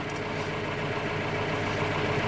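Tractor engine idling, heard from inside the cab: a steady, even hum.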